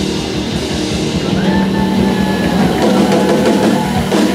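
Live rock band playing, with a drum kit keeping a steady beat under electric guitars.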